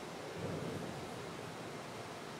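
Steady background hiss of room tone, with a brief faint low murmur about half a second in.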